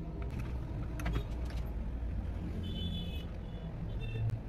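Small screwdriver turning a screw into plastic toy-house parts: scattered light clicks and scrapes of metal on plastic, with a short high squeak about three seconds in, over a steady low rumble.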